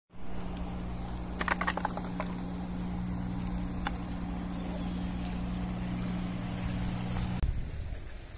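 An engine running steadily with a low, even hum, cutting off suddenly near the end; a few light clicks about a second and a half in.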